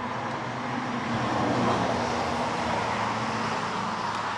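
A motor vehicle passing by: a broad rushing noise with a low engine hum that swells to its loudest a little under two seconds in, then slowly fades.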